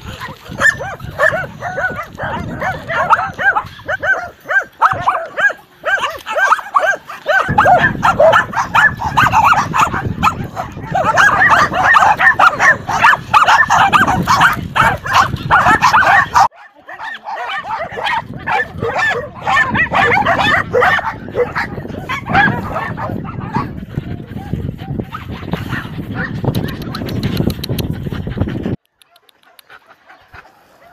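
Many kennelled dogs barking together in a continuous, overlapping din. It drops out sharply for a moment about halfway through, then stops suddenly near the end.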